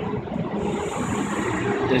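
Steady road traffic noise, with a brief rise in hiss in the middle.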